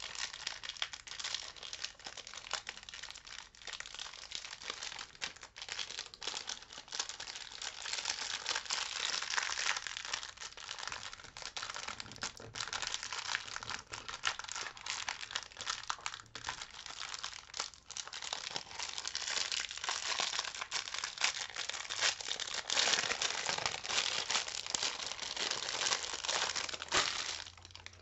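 Thin plastic packaging crinkling and rustling as it is handled and opened, a continuous run of small crackles.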